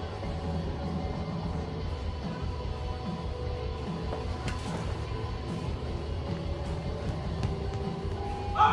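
Music with a deep, steady bass and long held notes, no voices over it.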